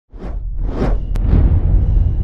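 Whoosh sound effects of an animated channel-logo intro: three sweeping whooshes, each rising and falling, over a deep steady bass rumble, with a short click a little past one second.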